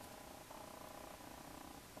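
Near silence with a faint steady hum that sets in about half a second in.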